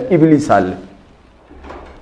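A man's voice lecturing, trailing off after about half a second into a pause of roughly a second before he speaks again.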